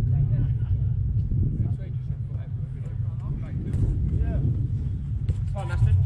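Players shouting and calling to each other during five-a-side football over a steady low rumble, with one louder shout near the end.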